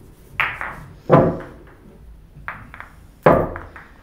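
Pool balls clacking together as they are gathered into the rack by hand: three sharp clacks, about half a second in, at about a second and after three seconds, with a few lighter ticks in between.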